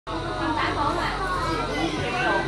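Several people talking at once, children's voices among them, with no clear words.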